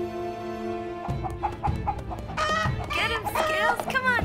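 A held string chord ends about a second in; then a chicken clucks and squawks in quick calls that bend up and down in pitch, mixed with scattered knocks and clatter.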